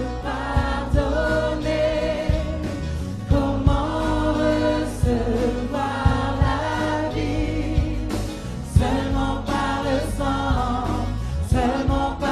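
Live gospel-style worship band: several singers singing a French worship song together, backed by drum kit, electric guitar, bass, acoustic guitar and keyboard, with a steady drum beat.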